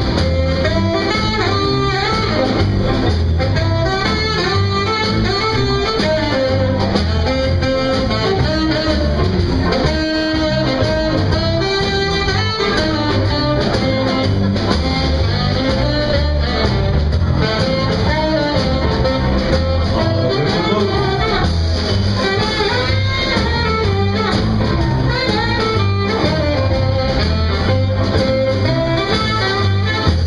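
A live jazz band playing: a woodwind melody over electric bass, drums and keyboard, continuous and steady in level.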